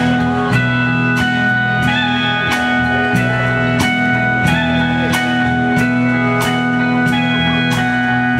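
A live country band plays an instrumental intro led by a pedal steel guitar, which holds sustained notes over bass, rhythm guitar and a steady drum beat.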